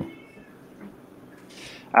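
A short pause in conversation: faint room tone, with a spoken word trailing off at the start and a short breath-like hiss before speech resumes at the end.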